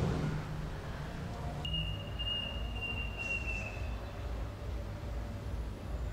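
Steady outdoor background noise: a low rumble. About a second and a half in, a thin, high, steady whistle-like tone joins it and lasts about two seconds.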